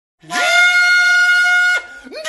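Music: a flute-like wind instrument holds one long high note. It slides up into the note at the start and drops off near the end.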